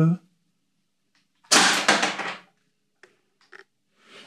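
A single shot from a CO2-powered 11 mm airsoft pistol: a sudden sharp report that dies away over about a second, followed by two faint clicks near the end.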